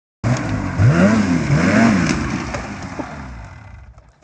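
Snowmobile engine revving up and down twice, then fading away as the sled moves off across grass.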